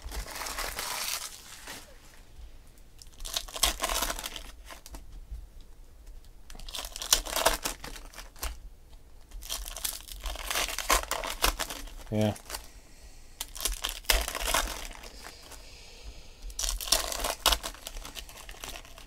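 Foil trading-card pack wrappers being torn open and crinkled in hand: short bursts of crackly tearing every few seconds, with quieter handling of the cards in between.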